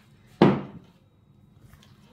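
A single dull thunk about half a second in, as a vinegar bottle is set down on a cloth-covered table, then faint handling sounds.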